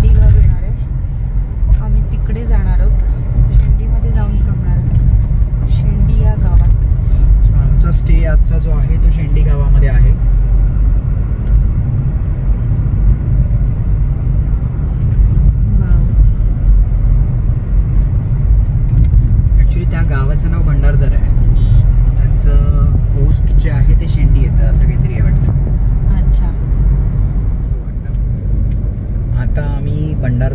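Steady low rumble of road and tyre noise inside a moving car, with voices talking now and then over it.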